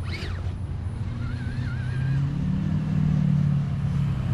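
Scale RC rock crawler's electric motor and gear drivetrain whirring under load as the truck climbs a steep rock step. The whir grows louder and rises slightly in pitch about two seconds in.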